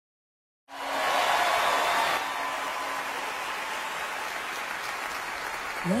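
Audience applause that comes in suddenly, is loudest for its first second and a half, then settles to a steadier, lower level.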